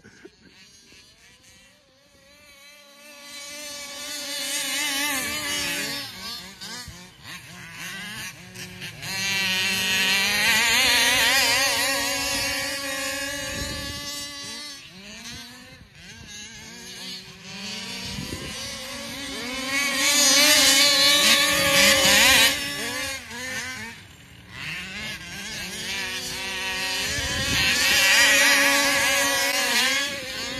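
Small gas two-stroke engine of a large-scale RC car revving up and down in quick throttle bursts. It is faint for the first couple of seconds, then grows loud and fades several times, loudest about a third of the way in and again two-thirds in.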